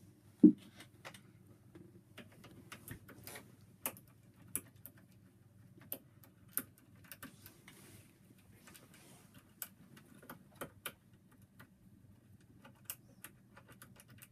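Small irregular metallic clicks and ticks of picking tools being worked back and forth in a Brisant Ultion Euro cylinder lock, with a faint steady low hum underneath. A single loud thump about half a second in.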